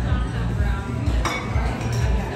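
Restaurant dining-room sound: background music with a steady bass beat under diners' chatter, and one sharp clink of dishware a little past halfway through.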